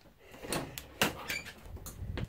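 A few clicks and knocks from a travel trailer's interior door being handled, the sharpest about a second in, with a low thud near the end.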